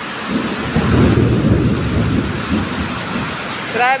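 Heavy rain pouring down onto a flooded street, with a low rumble of thunder that builds about a third of a second in and fades out by about three seconds.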